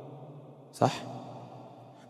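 A pause in a man's speech through a microphone, broken by one short, breathy spoken word, "Right?", about a second in, with room echo fading after it.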